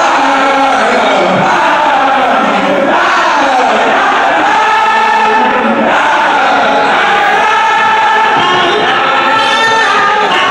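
Many voices chanting a Sufi zikr (dhikr) together, loud and unbroken, over the noise of a large crowd.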